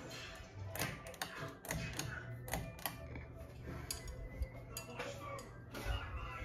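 Ceiling fan running: a low steady motor hum with irregular sharp clicks and ticks over it.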